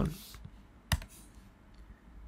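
Computer keyboard key presses: a keystroke at the start, then one sharper press about a second in as the Return key confirms the typed name, and a faint tick near the end.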